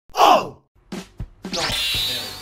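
Edited intro sounds: a short breathy sound falling in pitch, two soft knocks, then intro music starting about a second and a half in.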